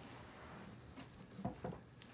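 Faint, high-pitched chirping, repeating several times a second, with two soft knocks about a second and a half in.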